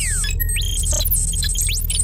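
Electronic sci-fi sound design for an animated logo sting: rapid high beeps and steep falling and rising sweeps over a steady low rumbling drone.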